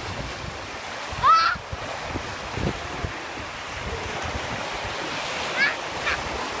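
Ocean surf breaking and washing in, a steady rush of water. A short high-pitched call rises over it about a second in, and another comes near the end.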